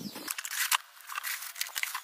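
Cardboard product box being handled, a light rustle with scattered small clicks and crinkles.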